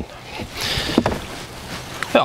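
Clothing rustling and shuffling as a person climbs into the rear seat of a car through the open back door, with a short knock about a second in.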